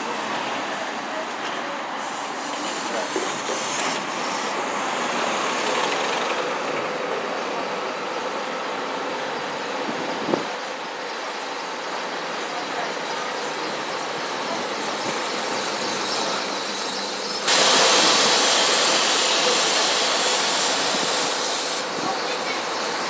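Buses pulling through a bus station: engines running with a steady, noisy traffic rumble. About three-quarters of the way through, the sound suddenly gets louder and hissier, and stays that way almost to the end.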